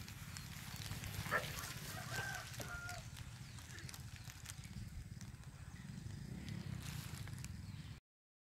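Quiet outdoor ambience: a steady low rumble, likely wind on the microphone, with a few faint short distant tones about two to three seconds in.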